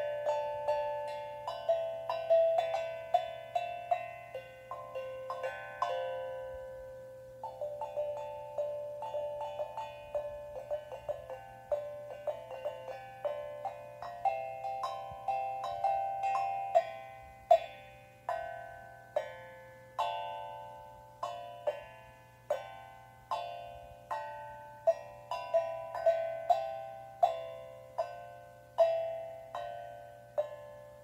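Steel tongue drum played with mallets: single struck notes ring out and fade one after another in an unhurried melody, with a brief pause about six seconds in.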